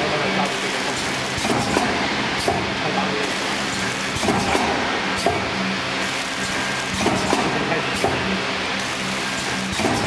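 Vertical form-fill-seal packaging machine running, forming, sealing and cutting printed film bags, with a sharp clack every second or so over a steady machine hum.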